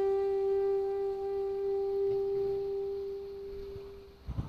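Closing note of a karaoke backing track: a single long held saxophone note, fading out near the end.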